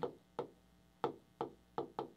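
Stylus tip clicking against the glass of a touchscreen as letters are handwritten: about half a dozen short, faint clicks at uneven intervals.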